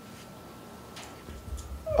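A pause in a man's talk through a handheld microphone: faint room tone with a thin steady high hum, a faint click about a second in, and a low rumble rising just before he speaks again.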